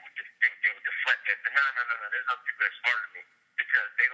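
A person talking over a telephone line, the voice thin and narrow-band, with brief pauses between phrases.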